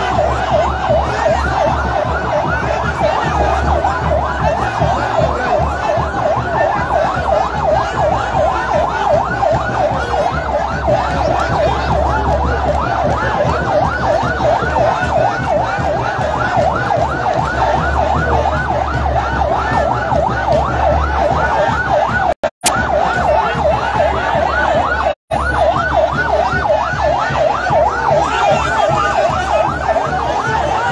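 Vehicle sirens yelping without a break, several fast rising-and-falling wails overlapping, over a low rumble. The sound cuts out briefly twice, about three-quarters of the way through.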